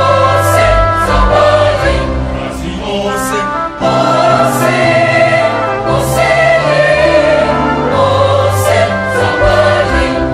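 A large mixed choir of women's and men's voices singing a gospel song in harmony, holding long chords that change every second or two, with crisp consonants sung together.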